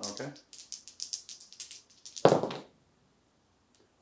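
A handful of dice rattled in the hand, a quick run of small clicks, then thrown onto the tabletop with one loud clatter a little over two seconds in.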